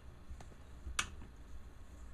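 One sharp click about a second in, with a fainter tick just before it, over a low steady hum: small handling noises as foam flexi rods are unwound from the hair.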